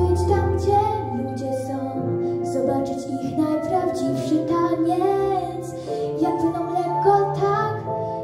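A young girl singing a slow, tender song in Polish over an instrumental backing track. A low held bass note in the backing ends about two seconds in.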